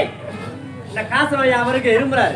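Stage performers' voices with music: a shouted "Hey!" at the start, a softer stretch of about a second, then a voice again over the music.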